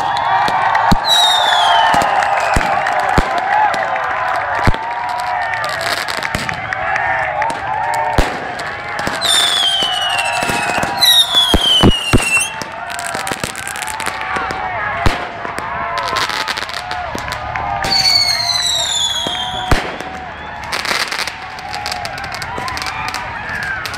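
Fireworks being set off: whistling rockets, each whistle falling in pitch, four of them over the stretch, and sharp bangs going off every few seconds, over a crowd talking.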